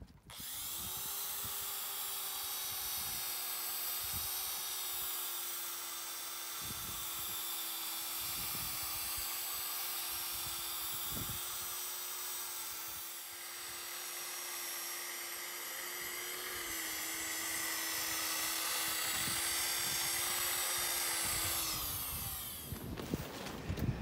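Handheld electric grinder-polisher with a diamond pad wet-grinding the surface of a cured concrete countertop. The motor spins up just after the start and runs steadily. Its pitch drops slightly about two-thirds of the way through, and it winds down shortly before the end.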